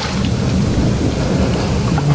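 A loud, steady noisy rush with a heavier low rumble underneath.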